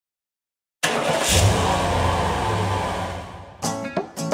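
Silence, then about a second in a rushing noise with a low rumble that fades away over about two and a half seconds. Near the end, acoustic guitar strumming begins.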